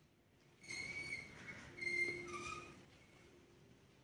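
A high whistle-like tone sounds twice, each time for under a second, the second slightly louder.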